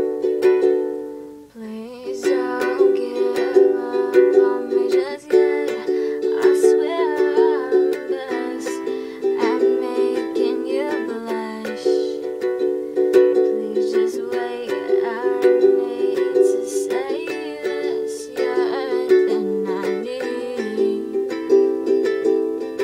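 Acoustic ukulele strumming chords in a steady rhythm, with a brief drop-off about a second and a half in before the strumming picks up again.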